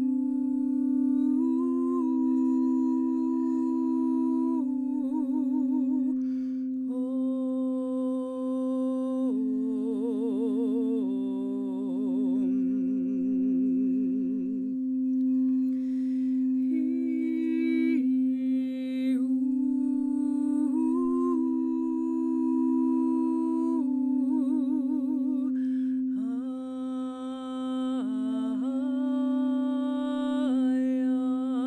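Wordless vocal toning for sound healing: a woman's voice holding long notes and moving between pitches, some notes with a wide vibrato, over a steady low drone.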